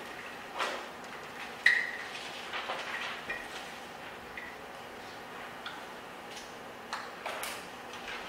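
Drawing on a board: a series of short scratchy strokes and taps, with a brief squeak about two seconds in.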